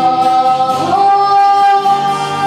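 A woman singing a Greek song live through a PA, holding a long note that moves to a new pitch about a second in, with keyboard and acoustic guitar accompaniment.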